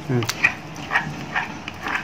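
A spoon stirring and turning a wet pounded salad in a bowl, giving soft wet clicks about twice a second. A brief low voiced sound comes right at the start.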